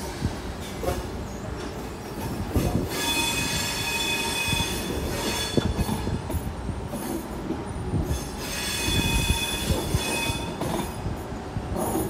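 Tangara electric train rolling past a platform: a low rumble with scattered clicks, and two long spells of high-pitched wheel squeal, the first about three seconds in and the second near the end.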